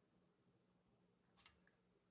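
Near silence: room tone, with one short faint click about one and a half seconds in.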